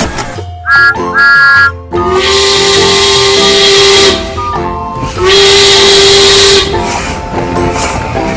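Cartoon steam-train sound effects over cheerful background music: two short whistle toots about a second in, then two long hissing steam-whistle blasts of about two seconds each.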